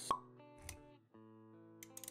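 Synthetic pop sound effect at the very start, over soft sustained background music, followed by a short swish; the music drops out for a moment about a second in and then comes back.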